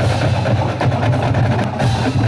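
Marching band playing, with its drumline's snare and bass drums prominent over the low brass.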